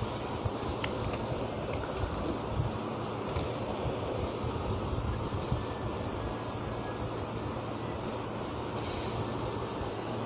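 Steady background noise, a low rumble and hiss, with a few faint clicks and a short hiss about nine seconds in.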